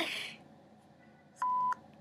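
A single short electronic beep, one steady tone with a click at each end, lasting about a third of a second, about one and a half seconds in.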